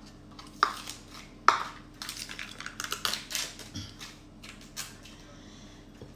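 A spatula scooping ricotta out of a plastic tub and knocking against a glass mixing bowl. There are two sharp taps, about half a second and a second and a half in, then a run of scrapes and small clicks.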